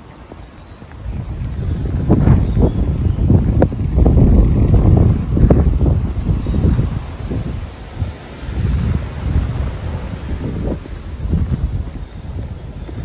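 Wind buffeting the camera's microphone: a low rumble that swells about a second in, gusts loudest for several seconds, then eases into smaller gusts.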